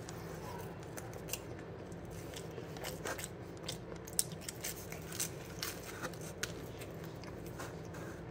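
Crunchy thin-crust cheese pizza being bitten and chewed close to the microphone: a run of sharp, crackly crunches, thickest from about three seconds in, over a steady low hum.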